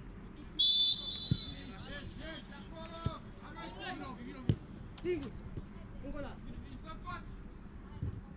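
A referee's whistle blows one steady blast of about a second, starting half a second in; it is the loudest sound. After it, players shout across the pitch and a football is struck sharply three times.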